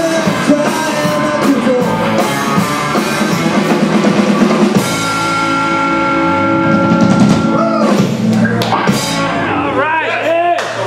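Live rock band, with electric guitars, bass guitar and drum kit, playing the close of its last song. About halfway through, a chord is held ringing for a few seconds, followed by a final scatter of drum and cymbal hits.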